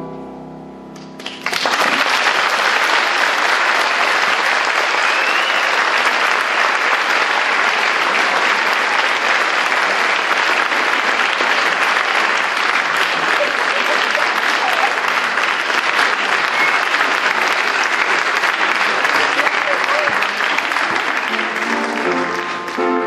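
A piano's last chord fades over the first second or so, then a concert audience breaks into loud, steady applause.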